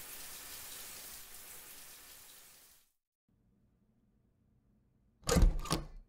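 Shower water running as an even hiss, fading and stopping about three seconds in. Near the end, a quick cluster of loud clicks and knocks.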